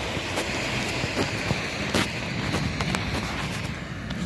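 Outdoor background noise: a steady rush, with a few light clicks scattered through it.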